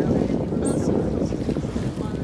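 Wind buffeting the microphone on the deck of a whale-watch boat, over a low, steady rumble of the boat and the sea.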